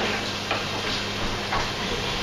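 Room tone: a steady low electrical hum with hiss, and two faint knocks about half a second and a second and a half in.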